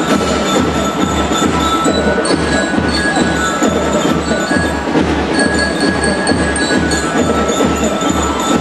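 A drum and lyre band playing: a steady bass drum beat, about two and a half beats a second, under the ringing notes of bell lyres.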